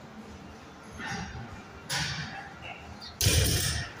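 Short, forceful breaths of effort during a failed 165 lb deadlift, then the loaded barbell with rubber bumper plates dropped onto the rubber gym floor with a heavy thud about three seconds in.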